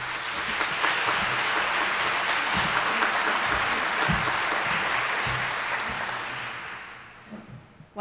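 Audience applauding in a large room, steady for about six seconds, then dying away.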